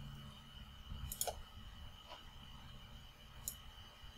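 A few faint computer mouse clicks, roughly a second apart, over a faint steady hum.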